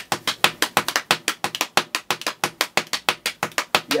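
Fast, steady rhythm of sharp hand strikes, about nine a second, kept up without a break: the gospel groove's 'pocket' being tapped out by hand.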